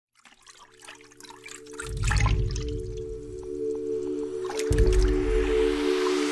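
Intro music: a held synth chord fading in from silence, with deep bass swells about two seconds in and again near five seconds, layered with water splash and drip sound effects.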